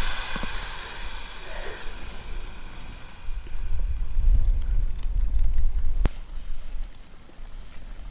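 Air hissing out of a Vango inflatable awning's air beams as it deflates, fading away over the first couple of seconds. Then a low rumble swells in the middle, with one sharp click about six seconds in.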